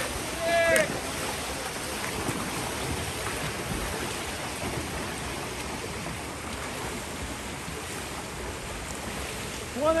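Steady wash of splashing water from water polo players swimming and wrestling for the ball. A person shouts loudly about half a second in, and again at the very end ("one inside!").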